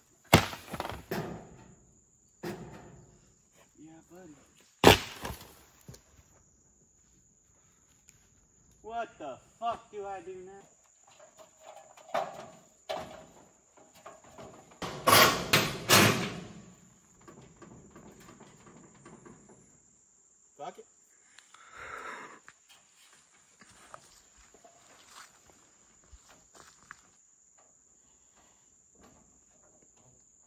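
A few sharp knocks, the loudest a quick run of three about halfway through. From that point a steady high insect trill runs on.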